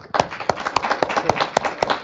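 Audience applauding: many hands clapping at once in a dense patter.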